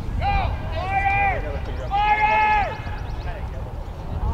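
Three drawn-out, high-pitched shouts from voices at a youth rugby game, the loudest about two seconds in, over a steady low rumble.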